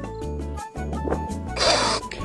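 Background music with steady bass notes and a fast ticking beat. Near the end there is a short burst of hissing noise, about half a second long.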